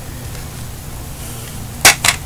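A plastic DVD case being handled gives a single sharp clack near the end, over a steady low hum.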